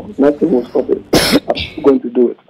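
A man talking, broken by a single cough about a second in.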